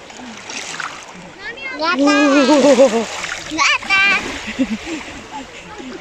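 Small sea waves washing in over bare feet at the shoreline, with a voice calling 'mami' in a long, wavering cry about a second and a half in and again near the middle as the cold water reaches the feet.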